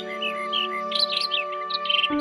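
Small birds chirping in quick, repeated high calls over soft background music of long held chords.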